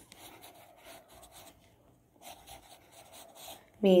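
Faint scratching of hand drawing, a writing tool making short strokes one after another; a voice starts speaking near the end.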